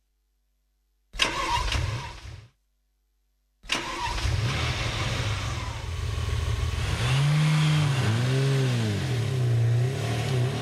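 A vehicle engine starting as a recorded sound effect: a short cranking burst, a pause, then the engine catches a little under four seconds in and keeps running, revved up and down several times near the end.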